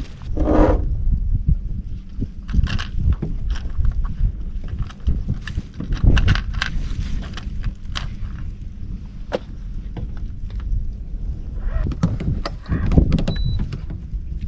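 Scattered knocks and clicks of fishing gear being handled in a small boat, over a steady low rumble.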